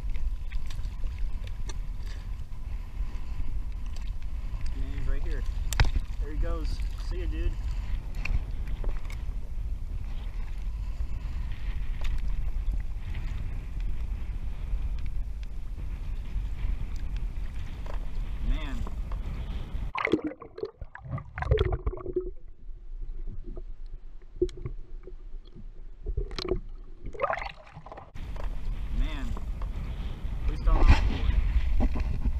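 Wind rushing over an action camera's microphone, with water slapping and sloshing against a plastic kayak hull. For several seconds near the end the sound turns muffled and dull, with a few louder splashes.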